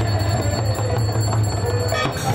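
Bells ringing rapidly and continuously over khol drums being beaten, with a steady loud low hum underneath.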